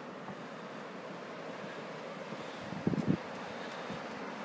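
Steady wind on the microphone over surf washing onto a beach, with two short thumps about three seconds in.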